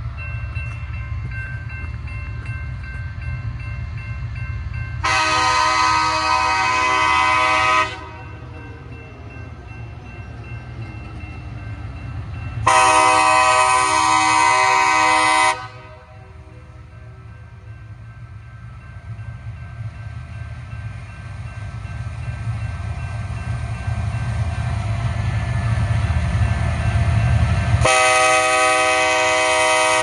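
Locomotive air horn blowing long blasts for the grade crossing as the train approaches: two blasts of about three seconds each, then a third starting near the end. A low rumble builds under them as the train draws closer.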